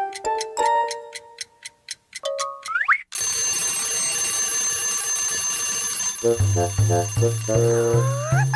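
A cartoon alarm clock's twin bells ringing steadily from about three seconds in. Before it comes a light plucked music tune ending in a short rising glide, and a bouncy bass tune joins under the ringing near the end.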